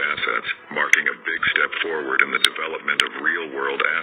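Speech only: a narrator talking, with no other sound standing out.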